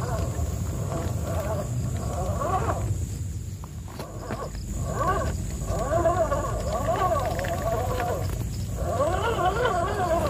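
Electric motor and gear train of an RGT EX86100 V2 RC crawler whining under load as it climbs over rocks, the pitch wavering rapidly up and down with the throttle. The whine drops away for about a second around three seconds in and briefly again near the end, over a steady low rumble.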